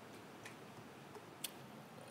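Near silence: faint room tone with two faint sharp clicks, about a second apart.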